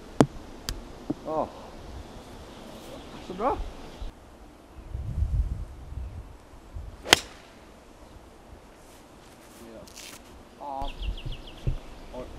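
A golf club striking a ball off the tee: a single sharp crack about seven seconds in, the loudest sound, with a smaller sharp click just after the start. Brief exclamations from the players are heard between them.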